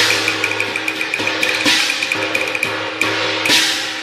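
Cantonese opera percussion (lo-gu, gongs and drums) in an accompaniment track: a fast run of woodblock ticks that gets quicker, with three ringing cymbal crashes, about two seconds apart.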